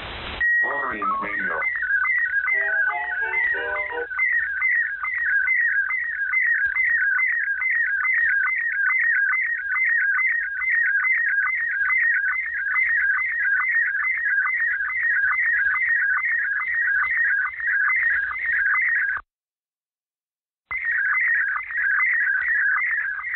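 Slow-scan television (SSTV) image signal received over shortwave upper sideband: a short steady leader tone, then a high warbling tone that sweeps down and back about three times a second, line after line. A falling glide and a few short lower notes sound in the first seconds, and near the end the signal cuts out completely for about a second and a half before resuming.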